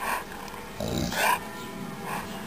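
A Dogue de Bordeaux vocalizing in play: a brief sound at the start and a longer one about a second in.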